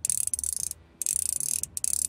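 Old metal single-action fly reel cranked by hand, its click-and-pawl check ratcheting in three quick runs of rapid clicks with short pauses between; the reel is not broken and still works.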